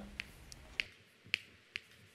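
Chalk tapping and clicking against a blackboard while numbers are written, five short sharp taps at irregular intervals.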